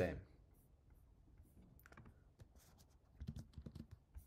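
Typing on a computer keyboard: scattered keystroke clicks, then a quick run of keystrokes near the end.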